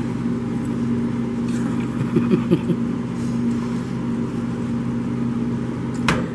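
Steady low machine hum from kitchen equipment, holding an even pitch without change.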